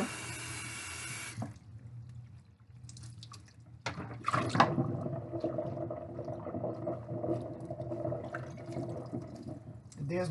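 Kitchen tap running into a stainless steel sink, shut off suddenly about a second and a half in. Then scattered drips and splashes of water as wet hair is worked in the sink, with a steady hum from about four seconds in.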